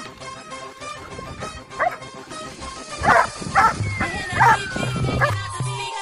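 A dog barking, once and then in a quick run of about five barks, over background music with a long falling tone.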